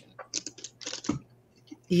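A felt-tip marker scratching across paper in a few short, quick strokes as a design is coloured in.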